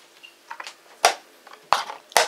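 A few sharp wooden clacks: a chess piece set down on the board and the chess clock's button pressed as a blitz move is made. The loudest clack comes about a second in.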